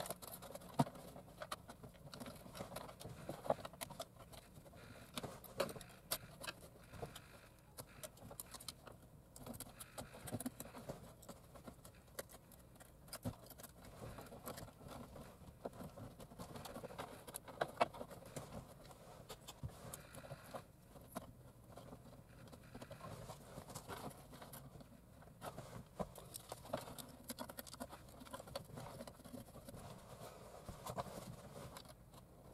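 Faint crinkling and crackling of aluminum foil tape being handled and pressed over openings in a car dash, with many small irregular clicks of hands working in the plastic dash cavity.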